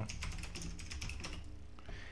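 Computer keyboard typing: a quick run of keystrokes as a terminal command is typed and entered.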